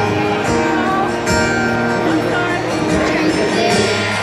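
Live slow ballad on amplified acoustic guitar, chords strummed about once a second through a concert sound system, with crowd voices close to the microphone.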